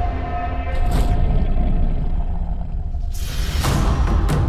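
Cinematic trailer-style music and sound design: a low rumbling drone under a held tone, a whoosh about a second in, and a swell building near the end.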